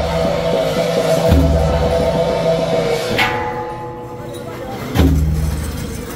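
Temple procession percussion band playing: deep drum beats about a second in and again near the end, and a clanging gong or cymbal crash with a ringing tail about halfway through. A held pitched note runs under the first half and fades out.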